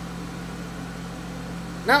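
A steady low background hum with no change in level, cut into right at the end by a voice starting to speak.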